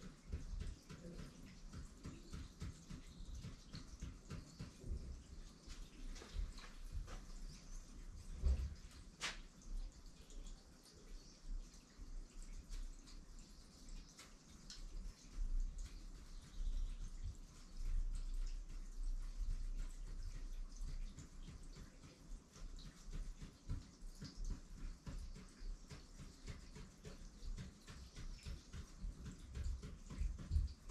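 Marker pen drawing short tally strokes on paper, an irregular run of quick, soft ticks and scratches, with a few louder knocks about eight to nine seconds in.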